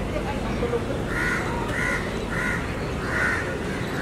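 A crow cawing four times, starting about a second in, over a steady low background rumble.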